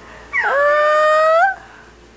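A nine-month-old baby gives one high-pitched squeal lasting about a second. It dips in pitch at the start, holds steady, then rises slightly before breaking off.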